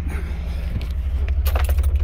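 A 15-inch subwoofer in a ported box plays a 25 Hz test tone, a loud, steady, deep bass drone that swells a little about halfway in. The bass sets loose parts in the car cabin rattling near the end.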